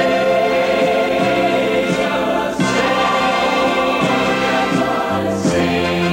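A choir of mixed voices singing a held, sustained song with instrumental accompaniment.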